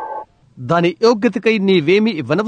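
Speech only: a voice talking, with a short pause about a quarter of a second in.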